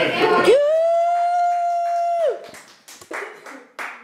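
A person's voice holding one long high note for nearly two seconds, scooping up into it and falling away at the end, after a short noisy burst at the start. A few short scattered sounds follow near the end.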